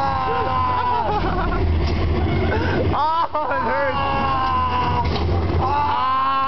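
Voices calling out in long, high, held cries that swoop up and down, over a steady low rumble.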